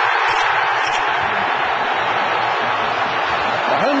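Football stadium crowd cheering a goal for the home side: a loud, steady wash of many voices.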